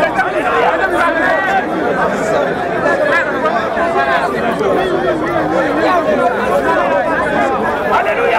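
Several people talking at once in a crowd: loud, continuous overlapping voices with no single clear speaker.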